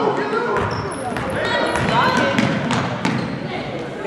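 Basketball being dribbled and bounced on a hardwood gym floor in short repeated knocks, under the voices of spectators and players in the gym.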